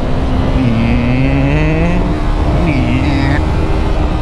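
Yamaha YZF-R3's parallel-twin engine running on the move under a steady rush of wind. Its pitch dips about half a second in, climbs again for about a second, then dips briefly once more near three seconds.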